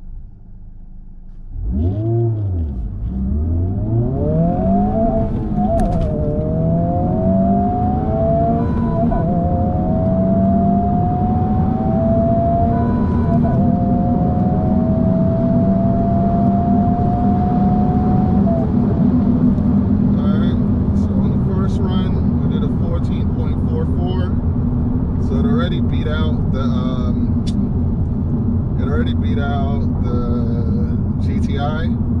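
Honda Civic Type R FL5's turbocharged 2.0-litre four-cylinder heard from inside the cabin on a full-throttle quarter-mile run: it launches from a standstill about two seconds in, then climbs in pitch through the gears, with a drop at each manual upshift. After about 18 seconds the engine settles to a steady note over road noise as the car cruises.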